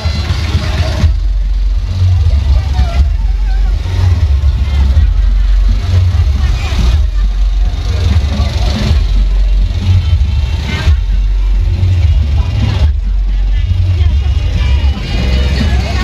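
Loud carnival music with a heavy bass that comes and goes every second or two, with voices over it.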